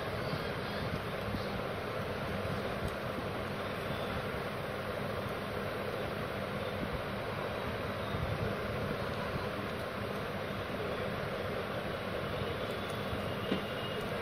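Steady rushing background noise, even throughout, with a faint click near the end.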